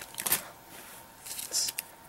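Brief rustling of trading cards and a booster-pack wrapper being handled: one short burst just after the start and another about a second and a half in.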